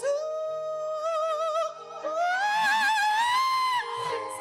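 A solo singer in operatic style holding a long note with vibrato, then sliding up to a higher, louder note that is held with vibrato and cut off shortly before the end. A soft, steady accompaniment sits underneath.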